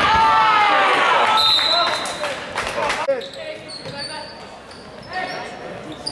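Basketball game in a gym: spectators' voices shouting loudly over the first two seconds, then the ball bouncing on the hardwood floor with a few short high squeaks, heard more quietly in the echoing hall.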